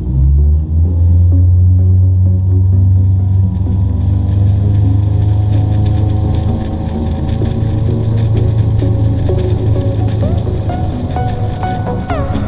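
A motorboat's engine running hard as the boat accelerates to tow a wakeboarder: a loud low drone that comes up suddenly at the start and climbs slowly in pitch. Electronic music comes in near the end.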